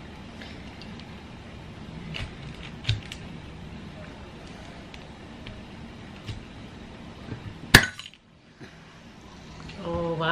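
Glass Kimura yuzu Ramune bottle being opened: a few small plastic clicks as the cap opener is handled, then one sharp pop near the end as the marble is pressed down into the neck.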